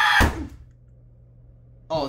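A loud yell breaks off with a heavy thump a fraction of a second in. Then only a low room hum is left until a voice starts at the very end.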